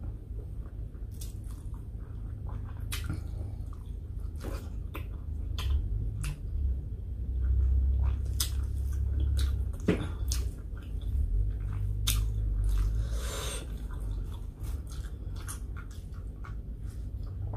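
Close-miked chewing of a mouthful of rice and saucy eggplant, with wet mouth clicks and smacks coming irregularly throughout, over a low rumble.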